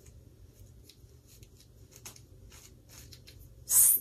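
Small wig-safe brush picking at the roots of a heat-friendly synthetic wig: faint, irregular scratchy strokes of bristles through the fibers.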